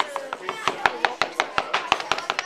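Rapid knife chopping on a cutting board: a quick, uneven run of sharp knocks, about eight a second.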